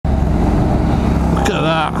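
Honda NC750 parallel-twin motorcycle engine running steadily under way, heard from the bike itself. A short voiced exclamation, "wee!", comes near the end.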